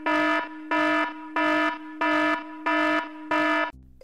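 Electronic alarm sound effect: a harsh, buzzer-like alarm tone pulsing about one and a half times a second over a steady lower tone, cutting off shortly before the end.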